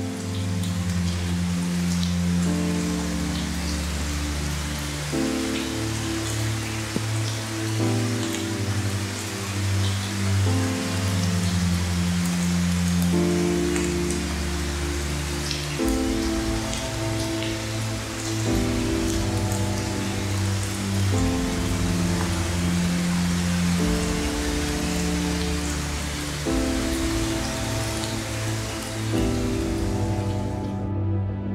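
Heavy rain falling on a woodland leaf canopy: a steady hiss peppered with the small taps of individual drops. Under it runs background music of sustained chords that change every few seconds.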